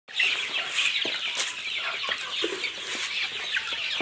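A large flock of young naked-neck chickens, about six weeks old, cheeping and clucking all together in a dense, continuous chorus of short high calls.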